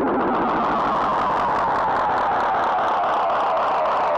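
Heavily effects-processed electronic sound in a trip-hop track: a dense band of fast-fluttering, distorted noise.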